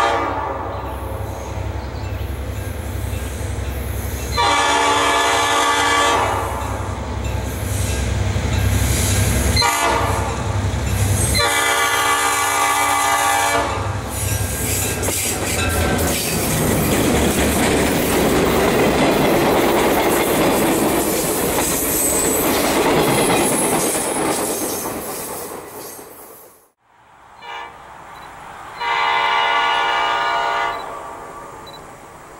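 Diesel passenger locomotives (an EMD E8A leading a BL-2) sounding a multi-chime air horn for a grade crossing: long blasts about 4 and 11 seconds in with a brief one between, over the low rumble of the approaching engines. From about 14 seconds the train passes close by, engines running and wheels clicking over rail joints with some squeal, then fades. Another horn blast starts near the end.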